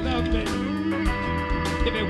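Live blues band playing an instrumental passage: electric guitar with bent notes over held Hammond B3 organ chords, with electric bass and drums.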